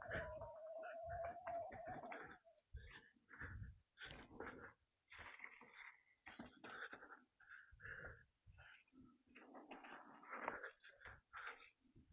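Faint riding noise from a mountain bike on a dirt jump trail: a steady whine for about the first two seconds, then short, irregular bursts of noise from the bike and rider with quiet gaps between them.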